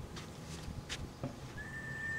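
Faint outdoor background noise with a few soft clicks. Near the end a single steady, high whistled note begins and holds.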